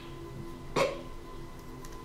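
A single short, sudden throat sound like a hiccup or snort, about a second in, over faint soft background music.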